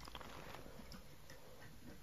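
Quiet room tone with a few faint, irregular light ticks.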